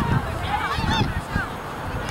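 Distant voices of players and spectators shouting and calling across the field, short high calls that rise and fall, over a low rumble.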